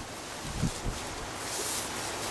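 Rustling of a nylon puffer jacket as its hood is pulled up over the head, with a couple of soft low thumps about half a second in, over a steady background hiss.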